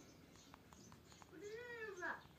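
A cat meows once near the end, a call of about half a second that rises and falls in pitch. A few faint ticks come before it.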